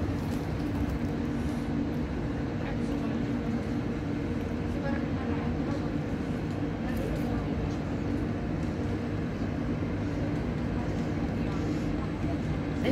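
Steady hum of a red double-decker passenger train standing at the station, running while stationary, with a constant low drone and no change in pitch.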